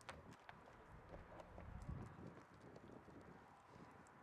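Near silence: faint open-air ambience with a scattering of light clicks and taps.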